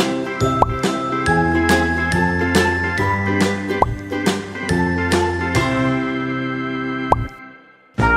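Cheerful children's background music: a bouncy tune of bell-like notes over a low bass line, with three short upward slide effects. It fades out about seven seconds in.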